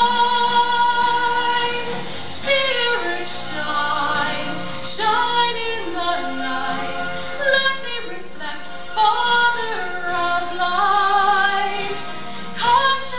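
Music: a woman singing a melody over instrumental backing, holding one long note at first, then singing a line that glides up and down.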